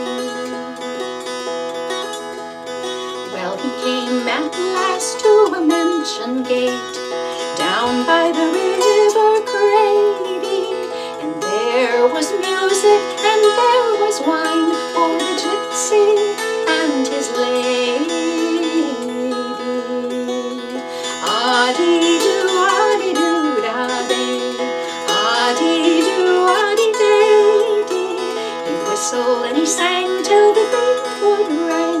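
Appalachian dulcimer playing a melody over steady, unbroken drone tones.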